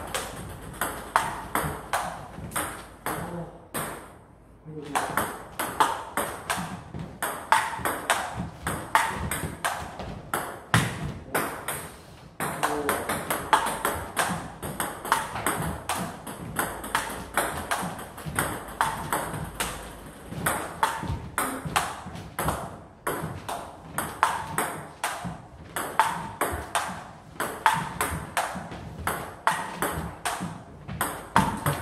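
Table tennis rally in chopping play: the celluloid-type ball clicking in a quick, even run of hits off bats faced with Yasaka Rakza XX rubber and off the table, with a short pause about four seconds in.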